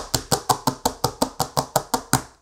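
Press-on nails tapping rapidly on a hard countertop: a quick, even run of sharp clicks from the nail tips, about six a second.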